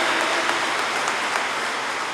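Audience applauding steadily, easing off slightly near the end.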